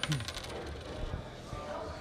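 A tossed coin landing and clattering on a bar table in a few quick clicks at the very start, then faint room noise.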